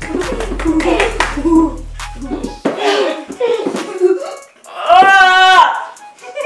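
Boys groaning, laughing and exclaiming without words as they suffer through extreme sour candy, with sharp hand claps in the first couple of seconds. About five seconds in comes one loud, drawn-out wail.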